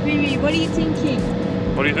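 Steady drone of a car ferry under way, mixed with wind on the microphone and a background music track. A voice starts near the end.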